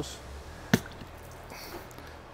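A single sharp click about three quarters of a second in, as the coiled hose's quick-connect fitting is unsnapped from the travel trailer's outside spray port.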